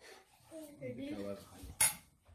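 A single sharp clink of tableware, a utensil or dish knocked at the table, near the end. Soft voices come before it.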